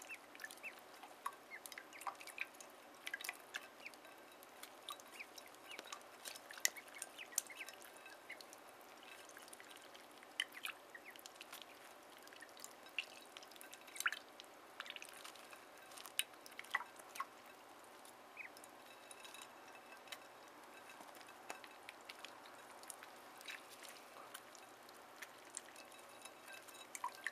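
Ducklings dabbling and drinking from a shallow glass dish of water: a quiet, irregular patter of small splashes, drips and clicks, several a second.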